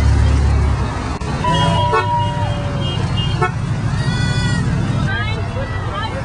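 A car horn gives a steady blast about a second long, over the rumble of passing road traffic.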